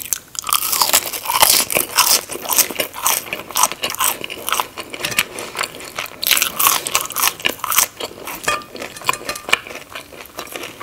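Close-miked chewing of ketchup-dipped Burger King french fries: a steady run of crisp crunches and mouth clicks.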